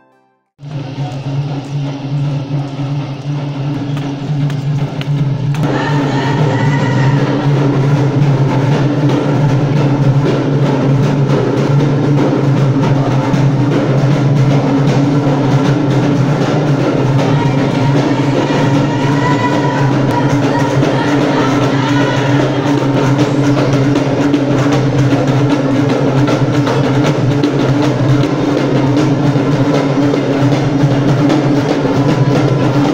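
Live tribal folk music: drums beating continuously under a bamboo pipe, the sound growing fuller about five seconds in.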